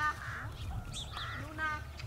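Domestic geese honking: one short call at the start and another about one and a half seconds in. Small birds give brief high chirps between them.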